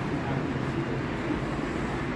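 Steady background noise with a low hum, no distinct event.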